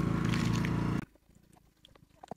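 Small engine of a water pump running steadily, stopping abruptly about a second in, followed by near silence with a few faint clicks.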